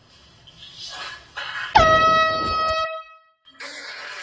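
Handheld canned air horn blasting once for about a second near the middle, a loud steady tone that dips in pitch right at the start and then cuts off. A brief noisy burst follows near the end.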